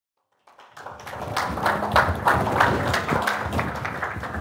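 Audience applauding: dense, irregular clapping that starts about half a second in and builds to a steady level within a second.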